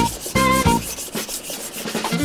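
Steel gyuto blade rubbed back and forth on a wet whetstone, its side pressed flat to the stone to grind away thickness behind the edge. Background music with plucked notes plays under the grinding.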